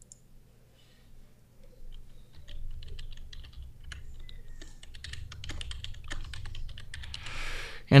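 Typing on a computer keyboard: a quick run of keystrokes starting about two seconds in and going on for several seconds, followed by a short hiss just before the end.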